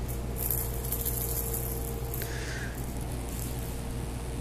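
Steady low room hum with faint, brief rustling in the first second.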